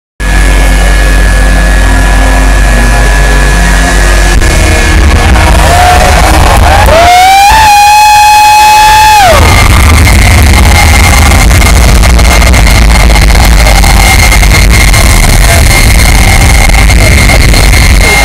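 Jet truck's turbojet engine running with its afterburners lit, very loud and clipping the recording, over a steady high turbine whine. About seven seconds in a whining tone rises, holds for about two seconds and falls away.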